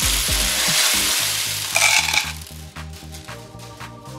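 A cupful of small plastic pony beads pouring out of a plastic cup onto a tabletop in a dense rush of clatter that stops about two seconds in. Quieter background music plays underneath.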